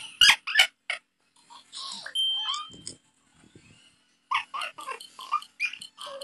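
A person's voice in short, choppy, non-word bursts, with a few sharp clicks in the first second and a lull in the middle.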